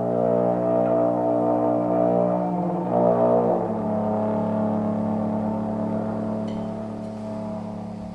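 Trombone holding a long, low sustained note that steps slightly down in pitch about three and a half seconds in, then slowly fades.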